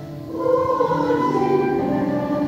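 Mixed choir of men's and women's voices singing with chamber orchestra. A softer moment at the start gives way to a new, louder phrase about half a second in, held as a sustained chord.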